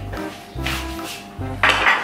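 Background music with a repeating bass line; near the end, a dish clatters loudly as it is set down on a glass tabletop.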